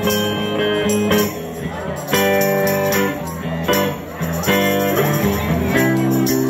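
Live rock-and-roll band playing an instrumental passage: electric guitar chords changing every second or so, with a tambourine shaken and struck along in a steady beat.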